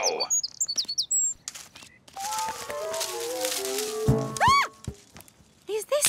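Cartoon soundtrack effects: quick high bird chirps in the first second or so, then a falling run of musical notes for a fall, ending about four seconds in with a thump of landing and a short up-and-down tone.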